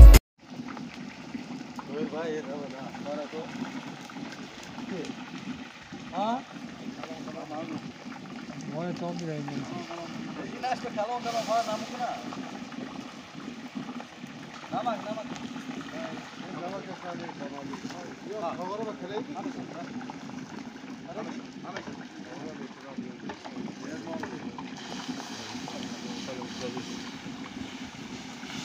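Loud dance music cuts off at the very start. Then indistinct men's voices talk on and off over a steady low rumble and light hiss.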